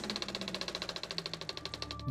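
Old film projector sound effect: a rapid, even clatter of about a dozen clicks a second over a faint low hum.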